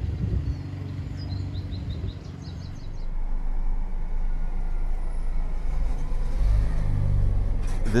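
Small birds chirping over a low hum for the first few seconds. Then city street traffic takes over, with a heavy low rumble of wind on the microphone. A large delivery truck's engine swells close by near the end.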